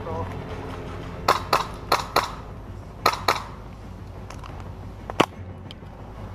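Sharp cracks of airsoft gunfire in an exchange of fire, mostly in pairs about a quarter second apart, three pairs in all, then one louder single crack near the end, over a steady low hum.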